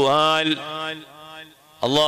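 A man's voice chanting an Arabic supplication in a drawn-out, melodic intonation. One long held note fades out about a second and a half in, and the chant resumes near the end after a short breath.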